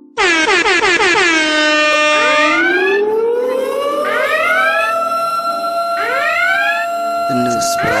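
Electronic siren-style DJ sound effect used as a transition into a song. It cuts in loud with a fast run of falling pitch sweeps, then settles into a steady high tone with rising whoops about every second and a half.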